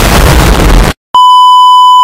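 A loud explosion sound effect that cuts off abruptly just under a second in, then, after a brief silence, a steady high test-tone beep of the kind that plays with TV colour bars.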